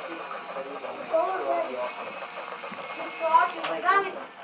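Indistinct, high-pitched voices speaking or calling, growing louder in short rising-and-falling phrases during the second half.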